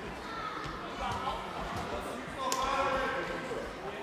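Echoing sports-hall sound of a youth handball game: a few sharp thuds of a handball bouncing on the hall floor over a murmur of children's and spectators' voices, which grow louder in the second half.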